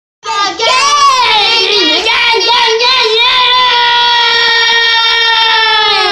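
Young girls singing loudly: a few sliding notes, then one long held high note that drops away at the end.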